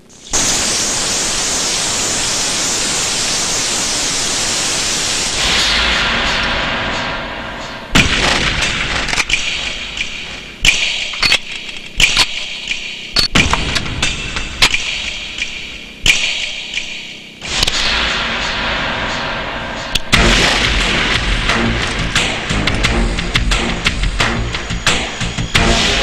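A shower spraying water, a steady hiss for about five seconds, gives way to tense film background music punctuated by many sharp percussive hits.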